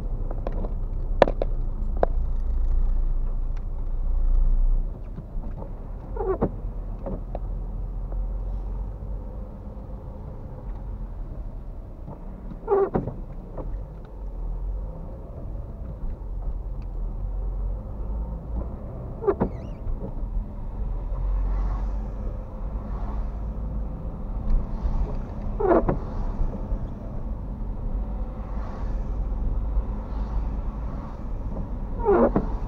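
Steady low engine and road rumble inside a moving car's cabin. A windscreen wiper on intermittent setting sweeps the wet glass about every six and a half seconds, five times in all.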